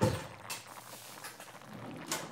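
A single sudden thump right at the start, then a faint steady hiss.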